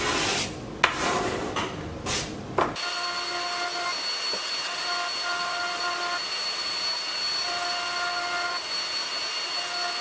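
Three strokes of a hand plane shaving a cherry leg, then a jointer running with a steady hiss and a high thin whine, its tone shifting as the board is fed along the fence.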